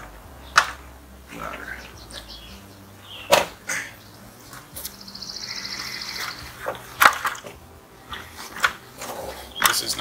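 A few sharp wooden knocks and clunks, spread out, as a heavy charred redwood beam is handled and set onto posts from stepladders.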